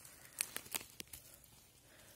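A few faint clicks and rustles come in the first second or so. They are handling noises from a hand turning a freshly picked bolete mushroom over heather.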